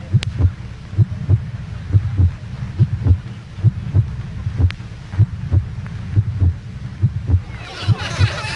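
A steady, heartbeat-like pulse of low thumps, mostly in close pairs, over a faint low hum, the kind of suspense sound effect laid under a tense TV scene. Just before the end a voice and laughter come in.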